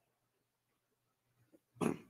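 Near silence, then near the end a man's short voiced exclamation, the start of an "ay".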